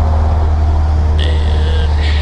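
Cessna 172's four-cylinder piston engine and propeller droning steadily, heard inside the cabin in flight. A brief high steady tone sounds a little past a second in.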